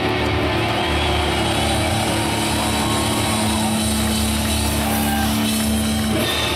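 Heavy metal band playing live through a large outdoor PA, recorded loud from the crowd: distorted guitars, bass and drums, with a long steady note held through the second half.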